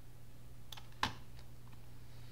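Two sharp clicks about a third of a second apart, the second louder, from working a computer's input devices, followed by a fainter tick. A steady low hum runs underneath.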